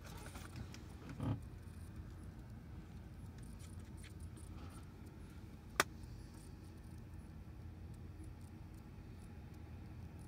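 Quiet rummaging and handling of small items, such as keys or a wallet, over a steady low rumble. There is a soft thud about a second in and one sharp click a little before the six-second mark.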